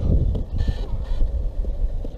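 Wind buffeting the microphone, an uneven low rumble, with a faint steady hum in the background and a short hiss a little under a second in.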